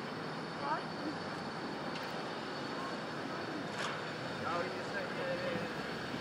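Steady city street noise of traffic, with faint distant voices talking now and then.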